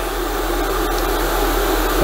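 Airbrush spraying a light mist of weathering paint: a steady hiss of air with a low hum underneath.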